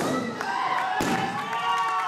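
A rubber balloon bursting once, about a second in, as a person sits down hard on it, with shouting voices around it.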